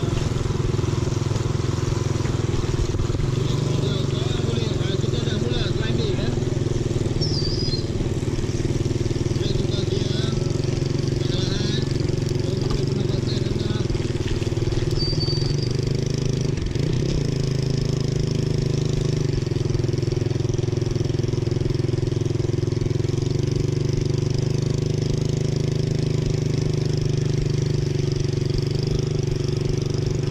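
Small motorcycle engine running steadily at low road speed close by, an even low drone that does not change.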